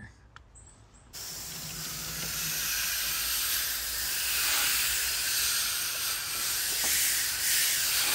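Garden hose spray nozzle jetting water onto a package air conditioner's condenser coil, rinsing off coil cleaner. A steady hiss of spray starts suddenly about a second in and keeps on.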